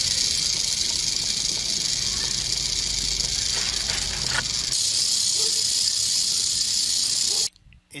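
Rattlesnake rattling its tail: a loud, steady, high-pitched buzz from the horny rings of the rattle knocking together, the snake's warning to animals that might step on it or threaten it. It cuts off abruptly near the end.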